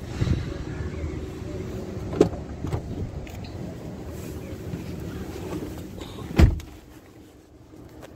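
Steady outdoor street rumble with a couple of sharp clicks, then a car door shut with one loud thud about six seconds in, after which the outside noise drops away to quieter cabin sound.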